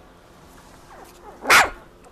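An 18-day-old British Labrador Retriever puppy giving a single short, sharp bark about one and a half seconds in.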